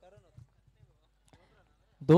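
Near silence: faint distant voices near the start and a few soft knocks, one sharp faint click a little past halfway.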